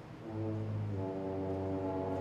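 Opera pit orchestra entering about a third of a second in with a loud, held low brass note, with more instruments joining within a second into a sustained full chord.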